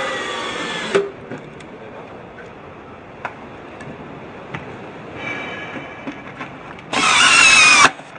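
Small electric motor whining in three short bursts of about a second each, the last the loudest, its pitch sagging slightly in each run, with a few small clicks between the runs.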